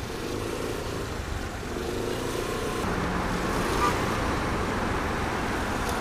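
Steady riding noise on a Suzuki scooter in city traffic: engine running under an even wash of wind and road noise, growing slightly louder after about three seconds.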